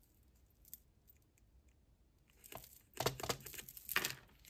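Hands handling small craft supplies on a desk: a few faint light clicks, then rustling and scraping bursts from about two and a half seconds in, loudest near the end.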